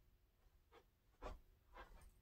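Near silence, broken by three faint, brief scuffs as a person moves and settles into place.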